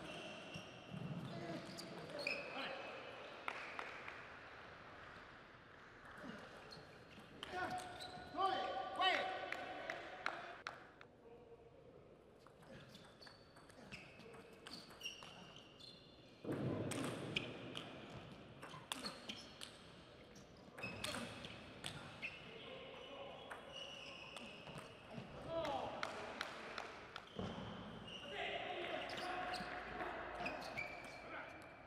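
Table tennis ball clicking back and forth between paddles and table in several rallies, with voices and shouts in a large hall between and over the points.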